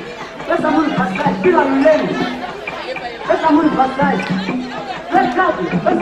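Voices talking and chattering over background music.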